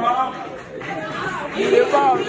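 Only speech: indistinct talking with background chatter in a large room.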